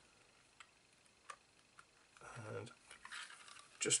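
Faint handling of a plastic decorative label paper punch: a few light clicks in the first couple of seconds, then a soft rustle of paper and plastic near the end.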